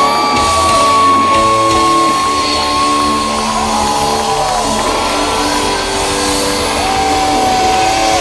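Live rock band heard from within the crowd: the lead electric guitar holds one long high note for about three seconds, then plays slow bent notes over the band, with the crowd shouting.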